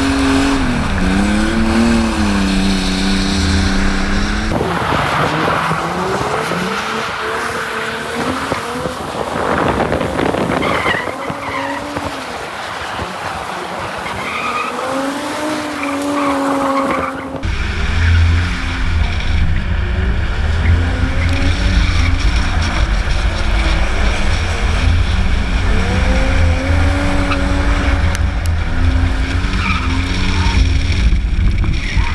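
Ford Falcon sedans drifting: engines revving up and down with tyres squealing and skidding. For the first few seconds and again from a little past halfway the sound is heard from on board, with heavy wind rumble on the microphone.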